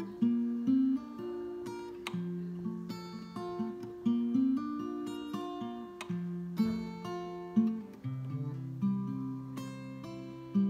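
Steel-string acoustic guitar played solo in an instrumental break of a slow country song: chords picked out note by note over ringing bass notes, with a stronger attack about once a second.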